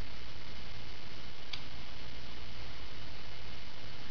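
Steady room tone and microphone hiss, with one faint click about a second and a half in.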